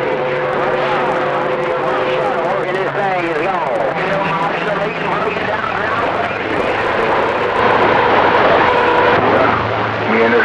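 CB radio receiver on channel 28 full of skip static, with faint garbled distant voices under the hiss and steady heterodyne whistles from overlapping signals; a warbling tone wavers up and down about three seconds in, and a new steady whistle comes in near the end.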